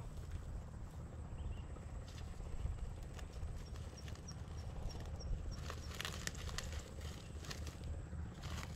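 Quiet outdoor ambience with a steady low rumble. Midway there is a faint run of about eight short high chirps, evenly spaced, followed near the end by a few sharp clicks and taps.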